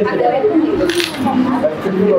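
Small metal objects clinking as they are set down on a tabletop, with one sharp clink about a second in.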